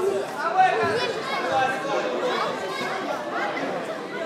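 Spectators talking and calling out at once: many overlapping voices with no single clear speaker.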